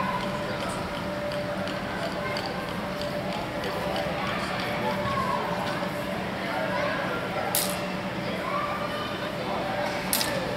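Longsword blades knocking and scraping during a fencing bout, with one sharp clash about three-quarters of the way in, over a murmur of voices in a large hall.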